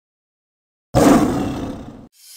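Silence, then about a second in a sudden loud roar-like sound effect that fades away over the next second.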